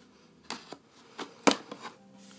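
Box-cutter knife slitting the edges of a cardboard box: about five short, sharp cuts and scrapes, the loudest about one and a half seconds in.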